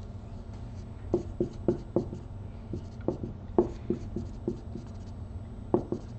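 Dry-erase marker writing on a whiteboard: a string of short squeaks and taps, one with each stroke of the letters.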